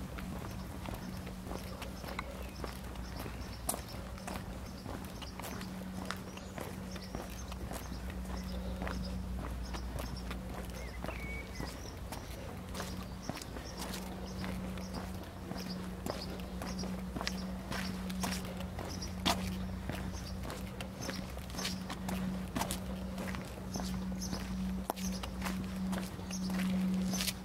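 Footsteps of a person walking on brick paving, with a bird chirping repeatedly in short high notes through most of the stretch and a steady low hum underneath.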